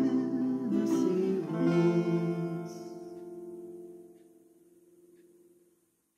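Acoustic guitar ending the song: the last strummed chords ring out and die away by about four seconds in.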